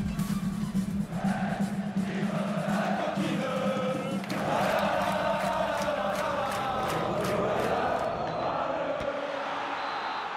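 Short musical transition jingle: a steady low drone with a crowd of voices chanting over it, fading out near the end.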